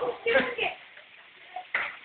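A man shouting a short word, then one sharp click about three-quarters of the way through.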